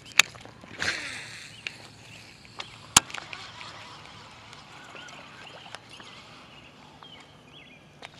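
A fishing rod cast with a buzzbait: a swish about a second in, then a single sharp click about three seconds in, followed by a quiet stretch with faint high chirps.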